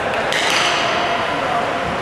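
A sharp, ringing ping from a hit during ice hockey play, about half a second in, fading out quickly over the murmur of voices in the rink.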